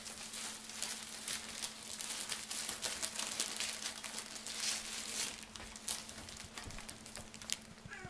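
Paper burger wrapper being unfolded and crinkled by hand, a dense run of crackling rustles.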